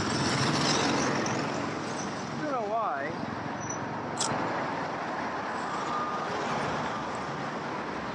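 City street traffic, with motor scooters passing close by; their noise is loudest at first and eases off over the first couple of seconds into a steady traffic hum.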